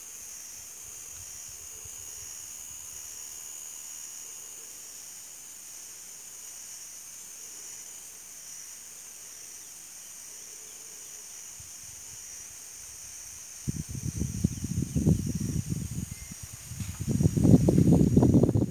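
Insects chirring steadily, a high thin drone over faint outdoor hiss. From about three-quarters of the way through, loud irregular low rumbling noise on the phone's microphone drowns it out.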